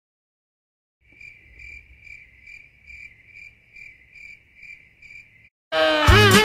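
Cricket chirping sound effect: a steady high trill with even pulses a little over two a second, starting about a second in out of dead silence and stopping shortly before the end.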